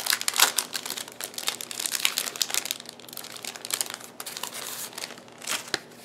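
Plastic wrapper crinkling as a notebook refill is taken out of its packaging. The crackling is dense for the first few seconds, then thins out, with a couple of last louder rustles near the end.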